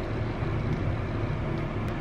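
Air vents running: a steady rush of air with a low hum under it, sounding echoey in the small room.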